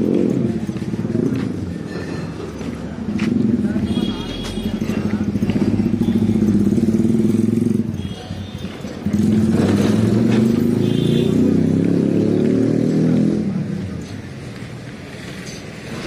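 Motorcycle and scooter engines running as they pass close by on a busy street, loudest in two stretches, with people's voices around.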